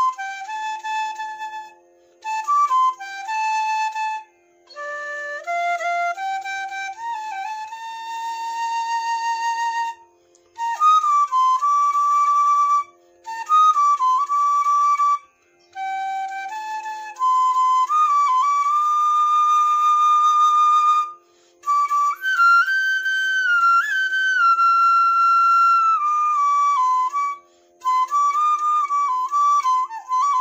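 Bamboo transverse flute playing a slow melody in about eight phrases, broken by short breath pauses. Notes step and glide smoothly from one pitch to the next.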